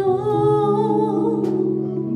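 Worship vocal group holding long notes in harmony with no clear words, the top voice wavering slightly, over a quiet guitar accompaniment.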